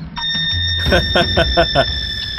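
A film soundtrack effect: a sustained high, alarm-like ringing tone. From about a second in, a quick run of pulses at about seven a second plays under it.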